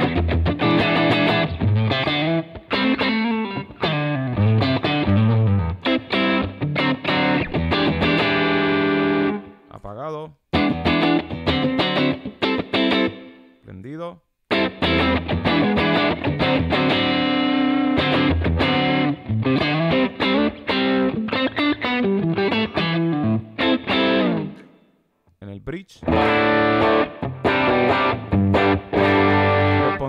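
Electric guitar played through the first overdrive of a Line 6 Helix preset: distorted notes and chords, stopping briefly about ten, fourteen and twenty-five seconds in.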